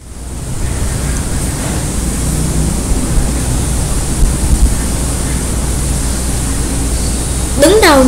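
Steady hiss with a low hum from an open recording microphone, fading in quickly after dead silence; a woman's voice starts near the end.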